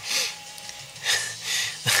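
A man breathing close to the microphone between sentences: a short, sharp breath at the start and a longer breath about a second in.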